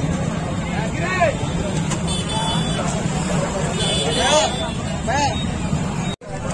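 Crowd of men talking over one another, with a few louder calls standing out, over a steady low rumble.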